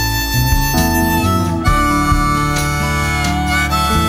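Background music: an instrumental passage of a song between its sung lines, with a harmonica playing held notes over guitar.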